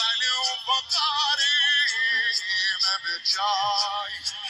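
A single voice chanting an Arabic religious lament (latmiya), sung in long held notes with a heavy wavering vibrato and a processed, effected vocal sound.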